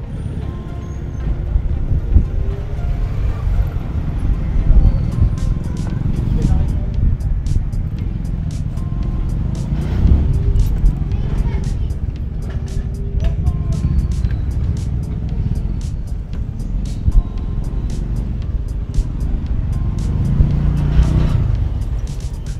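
Street ambience on a narrow city street: a steady low rumble of motorcycles and other vehicles, with voices and background music over it.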